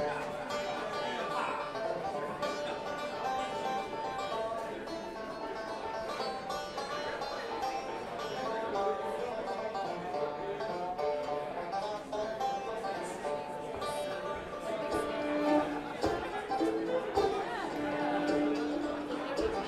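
Live bluegrass band playing, with the banjo taking the lead in quick picked runs. Long bowed fiddle notes come in over it near the end.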